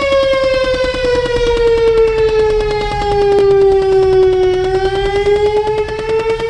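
Federal STH-10 electromechanical fire siren sounding at speed, its pitch sagging slowly and then climbing again near the end. A rapid clapping from the Chevy Impala the recording is made in runs under it.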